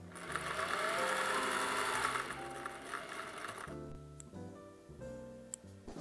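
Electric sewing machine running at speed for about two seconds, stitching shut the small gap left from putting in the zipper, then stopping.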